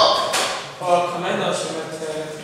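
A man's voice speaking, with a single sharp tap about a third of a second in.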